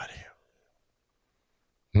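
A man's speech trailing off breathily, a pause of near silence, then a short 'mm' from him right at the end.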